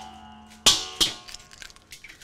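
Eggs cracked against a large stainless steel mixing bowl: the bowl rings with a steady metallic tone for the first two-thirds of a second, then two sharp shell cracks about a third of a second apart, followed by a few lighter taps and clicks of shell.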